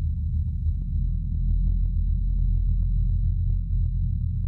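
Deep, steady rumbling drone of a logo outro sound effect, with faint irregular clicks over it and a thin steady high tone.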